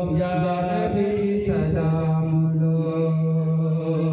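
A man chanting a devotional prayer into a handheld microphone, holding long, drawn-out melodic notes.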